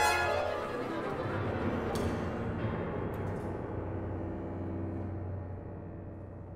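Contemporary classical music for large instrumental ensemble: a sharp accent at the start cuts off the held string lines, leaving a low sustained tone under a thinning, quieter texture that fades away.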